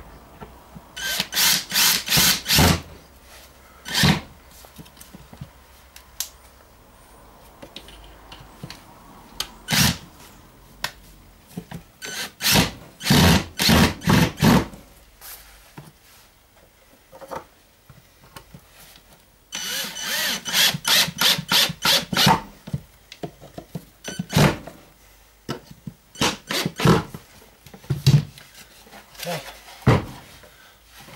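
Cordless drill driving screws into wooden battens, run in short bursts of the trigger, with several groups of bursts and pauses between screws.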